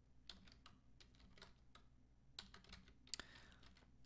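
Faint typing on a computer keyboard: a run of irregular key clicks as a short word is typed, with one sharper click about three seconds in.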